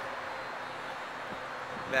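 Steady outdoor background noise with no distinct events; a man's voice comes in right at the end.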